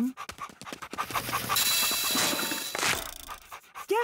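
Cartoon dog panting in quick short breaths, then about two seconds of dense scrabbling, tearing sound effects as it digs a hole into a sofa, cutting off about three seconds in.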